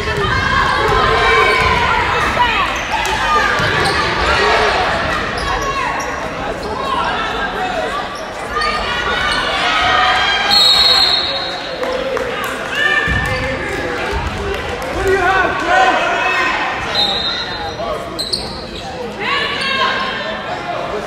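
Basketball bouncing on a hardwood gym floor during play, with voices of players and spectators echoing in the gym. Two short high steady tones sound about halfway through and again near the end.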